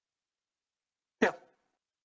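Silence, then a single short spoken "yeah" a little over a second in.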